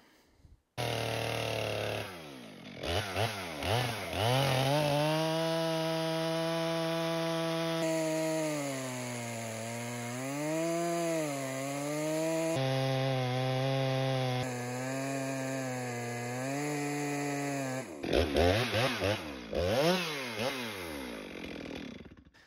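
Stihl MS462 chainsaw with a 32-inch bar and a square ground chain ripping lengthwise through a large white fir log. The engine revs up a couple of seconds in and holds at high revs under load, its pitch sagging and recovering in the cut, then revs up and down near the end. The new chain's rakers are at the factory setting, which makes the long rip a little slow.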